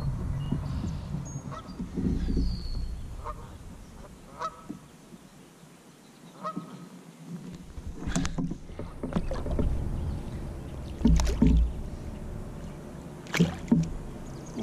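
Knocks and splashes as a bass is handled over the side of a kayak and released into the water, the sharpest ones about eight, eleven and thirteen seconds in. A few short bird calls sound in the background.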